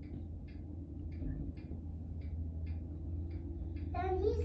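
Steady low hum of a compact tractor's engine as it plows snow, with a light, regular ticking about twice a second over it.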